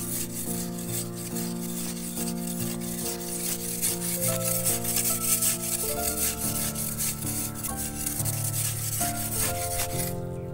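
Short-handled hoe scraping and chopping dry, crumbly soil in quick repeated strokes, over background music with held notes that change every second or so.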